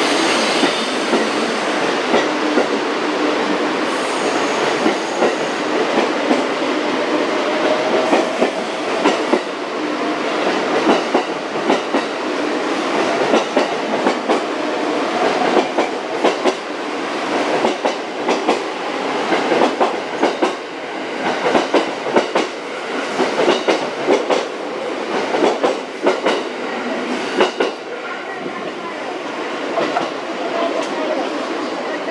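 JR West 683 series and 681 series limited express electric train pulling out and accelerating past: wheels clattering over the rail joints, the clicks coming faster and denser as it gathers speed, over a steady rolling rumble and a slowly rising motor whine.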